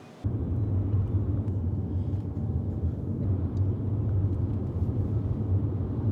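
Steady low rumble of a car driving, heard from inside the cabin, starting suddenly just after the start.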